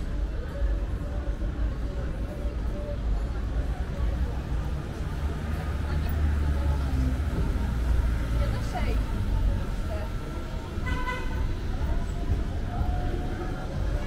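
Busy city street: people talking as they pass, a low traffic rumble, and a short vehicle horn toot about eleven seconds in.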